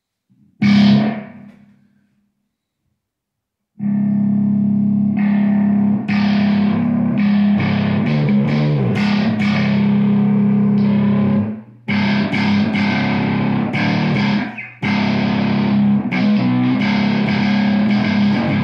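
Homemade one-string electric guitar (djentstick) played through distortion. A single note rings and dies away about a second in, then after a short pause comes sustained distorted riffing over a held low note, with two brief breaks.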